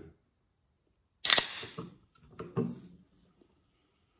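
Pull-tab of an aluminium soft-drink can snapping open with a sharp crack and a short hiss of escaping carbonation, followed by a softer second burst of fizz and handling noise.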